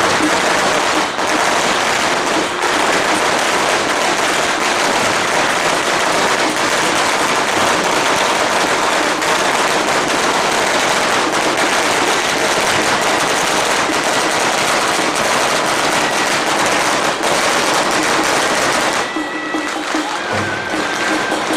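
A long string of firecrackers going off in a dense, continuous crackle, stopping about a second before the end.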